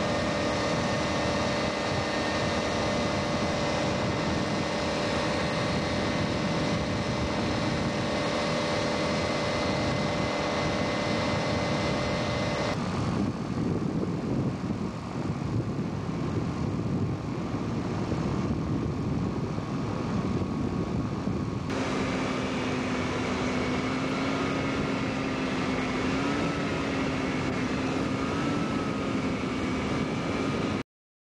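Engine and propeller of a two-seat motorized hang glider (ultralight trike) droning steadily in flight, heard from on board. The drone holds a few steady tones and changes abruptly twice, with the pitch wavering a little near the end.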